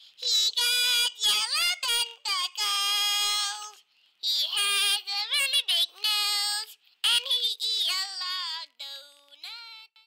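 A high-pitched singing voice in short phrases, its pitch sliding up and down, with brief pauses between phrases.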